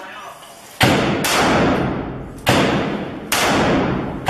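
Four loud single gunshots at irregular intervals, the first about a second in, each followed by a long echoing decay.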